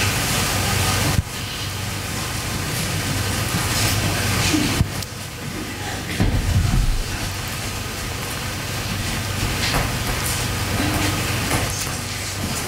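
Steady rushing room noise with a low hum, broken by a couple of knocks and thumps as children come up to the front, with faint voices in the background.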